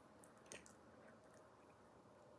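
Faint chewing of a mouthful of pepperoni pizza, with a few small wet mouth clicks about half a second in.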